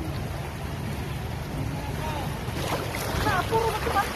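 Steady noise of fast-flowing shallow river water close to the microphone, with wind buffeting the mic. In the second half, short high calls and laughter from people in the water come in over it.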